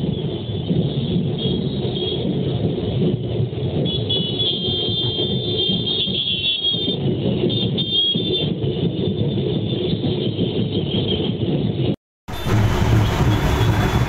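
Loud, steady street noise of a dense crowd and traffic, with music mixed in and some high steady tones in the middle. About twelve seconds in the sound drops out for a moment, then comes back brighter.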